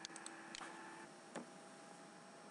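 Near silence with a faint steady hum and a few small, quiet clicks: a quick cluster at the start, then single clicks at about half a second and near 1.4 seconds.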